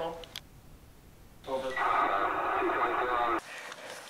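A voice through a radio speaker, thin and cut off in the highs, starting about a second and a half in after a short pause and stopping suddenly near the end.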